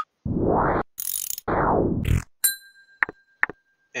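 Computer sound effects from a web-page animation: a click, then two whooshes about a second apart, followed by a steady chime-like tone with two clicks in it as the function's output appears.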